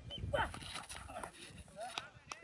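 Faint voices of several people calling out, in short snatches.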